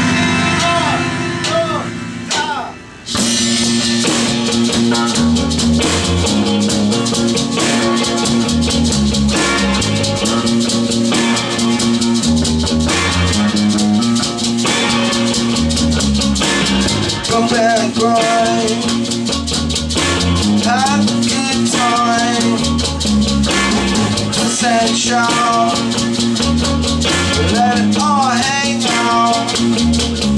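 Live rock band: a synthesizer plays briefly on its own, then drums, bass and electric guitar come in about three seconds in and the full band plays on, with a voice singing over it in the second half.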